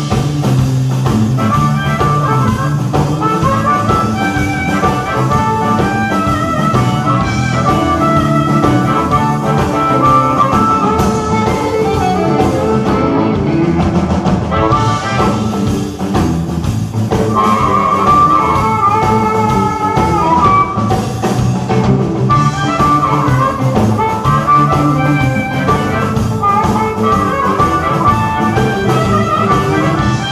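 A live electric blues band playing a straight-ahead Detroit-style blues shuffle in A: drum kit, bass and electric guitar, with a blues harmonica wailing over them.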